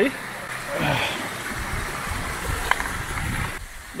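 Steady rush of a stream and waterfall, with footsteps and handling noise as someone scrambles over loose rocks and dry reeds; a single sharp click a little before three seconds in.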